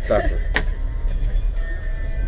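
Steady low rumble of a passenger train running, heard from inside the compartment, with a single sharp click about half a second in.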